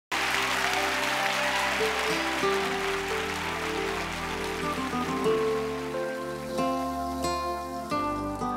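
Instrumental intro of a slow pop ballad, with sustained chords, while audience applause fades out over the first few seconds. Near the end, picked notes on a nylon-string classical guitar come through clearly.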